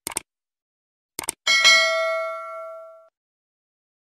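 Subscribe-animation sound effects: a quick double mouse click near the start and another double click just over a second in. Then comes a bright notification-bell ding that rings out and fades over about a second and a half.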